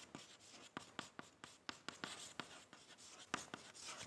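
Chalk writing on a blackboard: a faint, irregular series of short taps and scrapes as each symbol is written.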